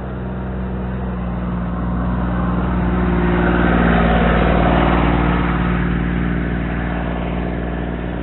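A motor vehicle's engine hum swells to its loudest about halfway through and then eases off, as it passes.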